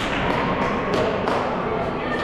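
Dodgeballs thudding as they hit the court floor and bounce, several separate impacts.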